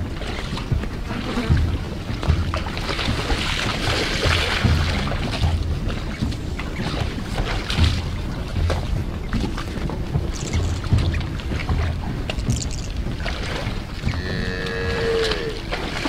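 African buffalo grunting and lowing again and again over a steady rush of noise from a herd moving through water, with a higher, wavering call a little before the end.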